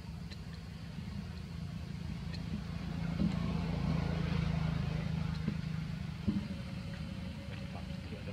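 A motor vehicle's engine running at a steady low hum, growing louder in the middle and easing off again.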